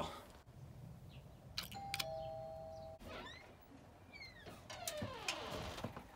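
A doorbell chime rings a two-note ding-dong, high note then low, about two seconds in, just after the click of the button. Faint falling squeaks follow later.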